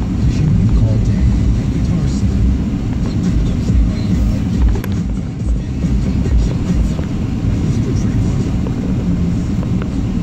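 Car cabin noise while driving: a steady low rumble from the engine and tyres on the road, with the car radio playing underneath.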